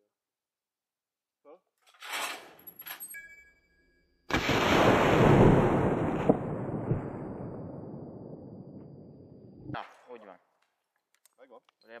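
A black powder shotshell fired from a 19th-century Sauer und Sohn drilling: a sudden very loud report about four seconds in, fading slowly over several seconds and then cutting off sharply. About two seconds in there is a shorter, quieter burst of noise.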